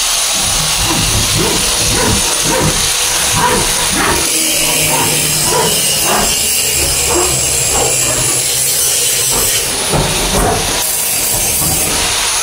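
Hand saw cutting plywood in repeated strokes, over a steady hiss.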